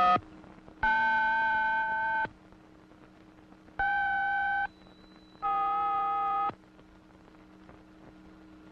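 Touch-tone push-button telephone keypad tones for the digits 1, 9, 6, 4: four steady two-pitch beeps, the first ending right at the start, the second held about a second and a half, the last two about a second each, with pauses between, over a low steady hum.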